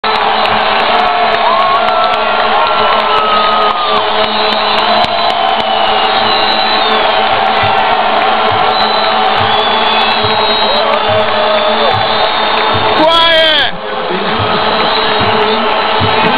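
Large stadium crowd at a football match cheering and chanting, a dense, steady din of many voices with low thumps repeating about once a second. About thirteen seconds in, one loud, close yell rises above the crowd for under a second.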